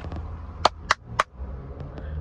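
Three sharp clicks, about a quarter second apart, over a low steady hum.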